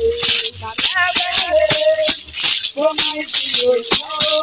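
Beaded gourd rattles (shekere) shaken in a quick, steady rhythm, with women singing a melody over them.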